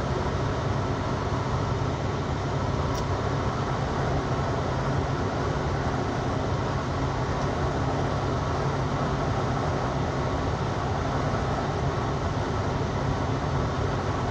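Steady road and engine noise inside a moving vehicle's cab: a constant low drone with an even hiss above it.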